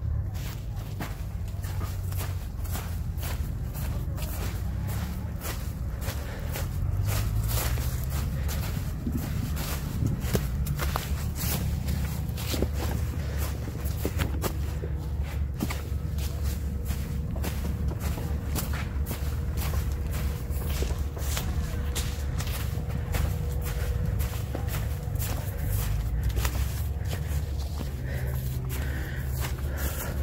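Footsteps of a person walking between orchard rows, with frequent irregular crackles over a steady low rumble.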